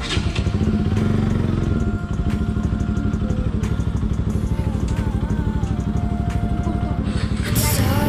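Bajaj Pulsar NS200 single-cylinder motorcycle engine idling. It comes in loudly right at the start and then holds a steady, rapid firing pulse.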